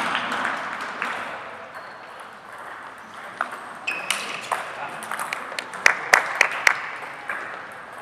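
Table tennis rally: the celluloid-type ball clicks sharply off bats and table about twice a second, around a dozen hits starting about three seconds in, the loudest near the end of the rally.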